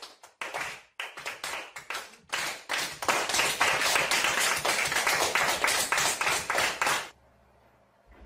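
A small group of children clapping by hand: scattered claps at first, building into steady, dense applause about three seconds in, then cutting off suddenly near the end.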